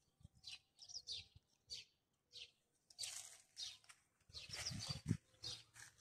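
Faint chirps of small songbirds, short and high-pitched, scattered through the first couple of seconds. A few soft, broader noises follow about three seconds in and again near five seconds in.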